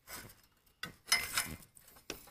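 Metal dipstick tube clinking and scraping in its hole in the engine block as it is pushed and twisted to seat its O-ring: a few short scrapes, the loudest bunch about a second in.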